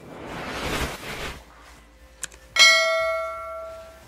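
Sound effects of an on-screen subscribe-button animation: a rush of noise in the first second or so, a mouse click, then a bright bell ding, the loudest sound, ringing and fading out.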